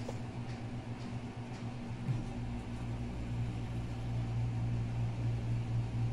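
A steady low hum, with a deeper rumble joining about two seconds in.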